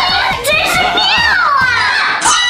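Background music with a steady beat under a high-pitched voice that slides down in pitch about halfway through.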